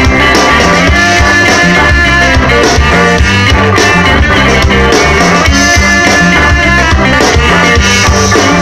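Live ska band playing loudly: electric guitars, saxophone and drums with a steady beat.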